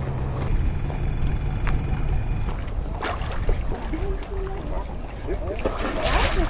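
Low rumble of a boat engine in the harbour for the first two seconds or so, fading away, then faint voices, and a water splash at the very end as a sea turtle breaks the surface.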